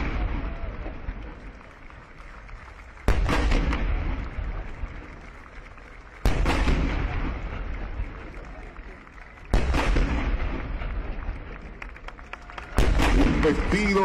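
Ceremonial artillery salute: four cannon shots about three seconds apart, each a sudden boom with a long rolling echo that fades before the next, part of a 21-gun salute.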